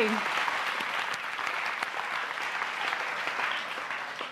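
A large audience applauding steadily, a dense even clapping.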